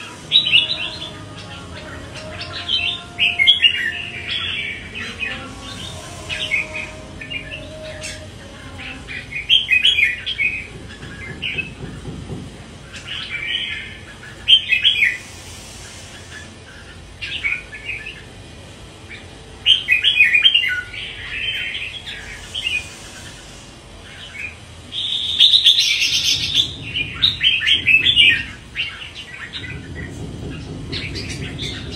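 Red-whiskered bulbul singing: short, bright, warbling phrases repeated every one to three seconds.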